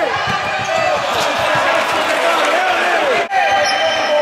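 Futsal ball kicked and bouncing on a wooden indoor court, with players' and spectators' voices calling out over it.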